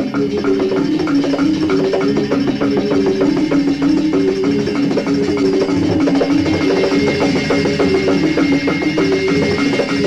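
Balinese gong kebyar gamelan orchestra playing: bronze metallophones struck in a fast, continuous run of strokes over held ringing tones, with drums.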